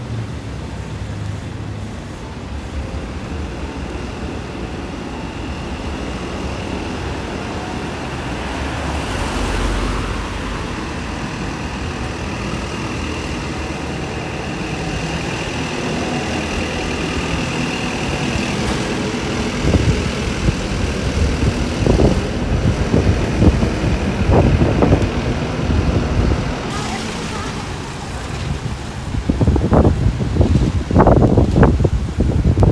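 Street traffic: cars and light trucks passing close by on a city road. A thin steady high tone runs through much of the first half, and from about two-thirds of the way in, wind gusts buffet the microphone in low rumbles.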